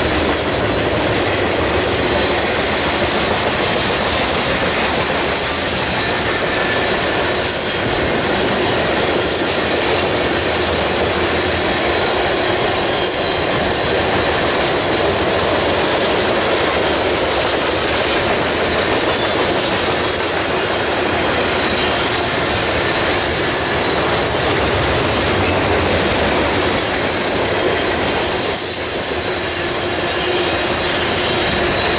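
Freight cars of a Union Pacific manifest train rolling past close by: a steady, loud run of wheels on rail with clickety-clack over the joints.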